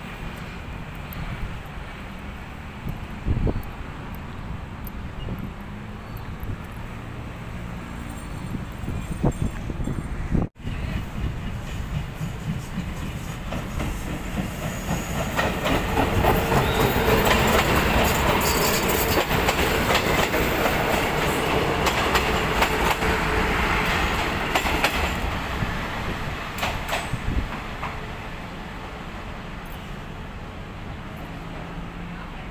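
A diesel multiple-unit passenger train passes close by, its engine running and its wheels clacking over the rail joints. It builds to its loudest about halfway through the clip, then fades as it moves away. Before it comes there is only low outdoor station noise, cut off abruptly about a third of the way in.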